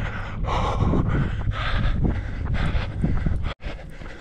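A runner's hard breathing on an uphill road climb, about two breaths a second, with wind buffeting the microphone.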